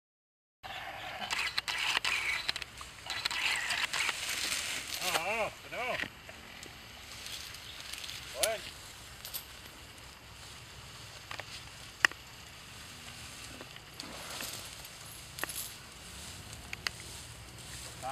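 Crackling and rustling of dry grass and brush with scattered clicks, loudest in the first few seconds, and a sharp snap about twelve seconds in. A man gives a few short, sharp calls, a couple near five to six seconds and one near eight and a half seconds, like a mahout's commands to an elephant.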